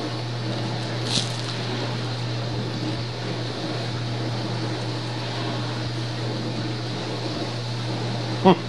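Steady low background hum with an even hiss, and one short, sharp click about a second in.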